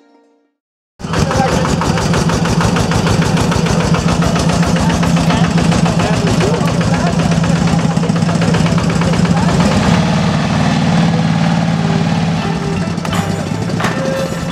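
A small vehicle's engine running under way, heard loud from inside its open cab. It cuts in suddenly about a second in, a steady hum with a fast, even pulse and road noise.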